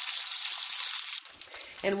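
Bacon frying in a skillet: a dense sizzle with small pops and crackles, which drops to a quieter level just over a second in.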